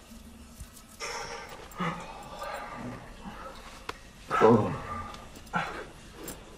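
Wordless human voices: a run of short groans and gasps, the loudest about four and a half seconds in, falling in pitch.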